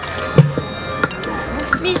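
Metal spoon knocking and scraping in a plastic bowl of berries as they are stirred and mashed: three sharp clicks about two-thirds of a second apart, with a duller thump about half a second in. A faint steady high tone runs underneath.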